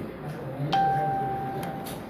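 A single steady beep, one clear pitch held for about a second, starting abruptly just under a second in, over a faint murmur of voices.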